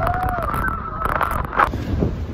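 A person's long, drawn-out vocal cry: one held note that bends down about half a second in and trails off, over a steady low rushing noise of wind and water.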